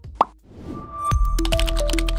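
A single short pop sound effect. About a second in, the station's closing ident music starts loud, with a deep bass under a melody of held notes that step from one pitch to another.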